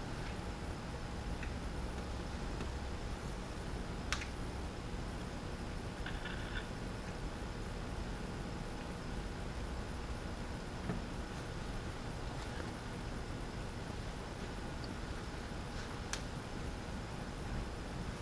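Quiet steady electrical hum and hiss, with a couple of soft single clicks.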